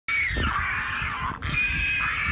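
Seabirds calling loudly in a near-continuous high, whistle-like squeal, with a short break about one and a half seconds in, over a low rumble of wind or surf.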